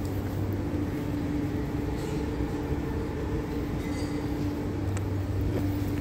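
Steady low mechanical hum with one held tone, the indoor drone of a large building's machinery.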